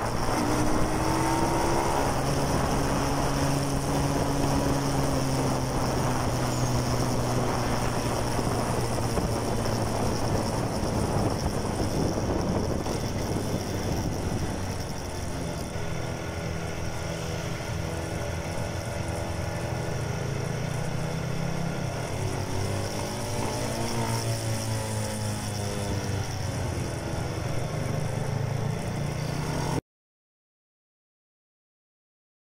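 Small motorcycle engine, a Rusi Mojo 110 mini bike, running under way with wind rush on the microphone. Its pitch eases down in the first few seconds, and it rises and falls again later with the throttle. The sound changes character about halfway through.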